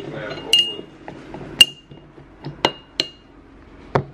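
Sharp glass clinks, about five in all, each with a brief ring, as lemon wedges are dropped into a drinking glass and knock against it and the metal straw standing in it.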